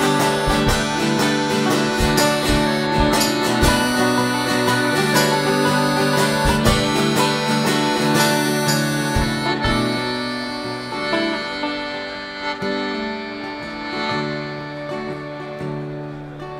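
Folk band playing an instrumental passage live: harmonica over strummed acoustic guitar, banjo and accordion. About ten seconds in the playing softens and the high parts thin out.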